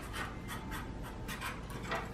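Marker pen scratching on a plastic drone propeller blade in a quick, irregular series of short strokes.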